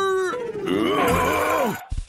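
A cartoon character's voice grunting in a drawn-out, wavering sound that turns into a laugh near the end.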